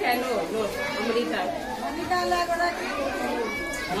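A crowd of schoolchildren chattering, many voices talking over one another at once.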